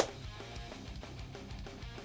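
Faint background music with guitar, playing low and steady. A single sharp click right at the start.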